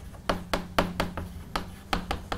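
Chalk writing on a blackboard: a quick, irregular series of sharp taps and clicks as the chalk strikes the board with each letter.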